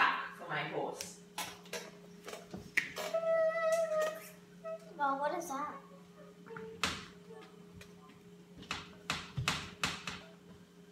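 Scattered clicks and knocks of dry-erase markers being handled and written on a whiteboard, over a steady low hum, with brief bits of quiet children's speech.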